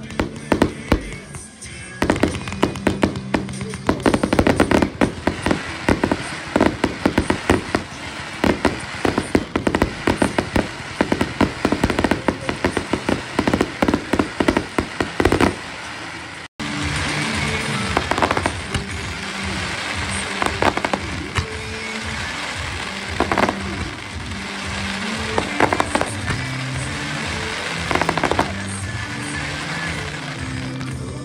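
Fireworks display with music playing: a dense run of rapid crackling pops from bursting shells through the first half. After a sudden break about halfway, the music carries on with only occasional single bangs.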